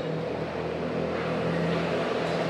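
A steady, even drone with a low pitched hum.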